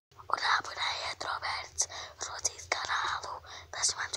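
A child whispering close to the microphone in quick, breathy syllables, with small mouth clicks between them.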